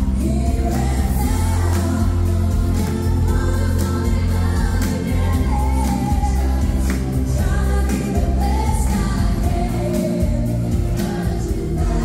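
Live dance-pop sung by a five-singer male and female pop group, several voices singing together over a steady, bass-heavy beat, amplified through the venue's PA and heard from the audience.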